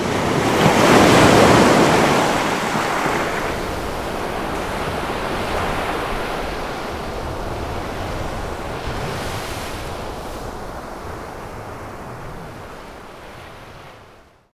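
A rushing, surf-like noise that swells over the first second or two and then slowly fades away.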